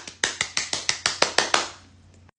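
One person clapping her hands: about a dozen quick, even claps at roughly six a second.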